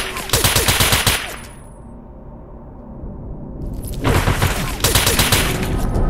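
Two bursts of rapid automatic gunfire, each about a second long, the first at the start and the second about five seconds in, with a quieter stretch between.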